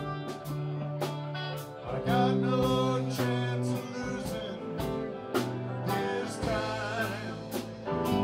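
Live rock band playing, with sung vocals over electric guitar, bass, keyboard and a drum beat of about two strokes a second.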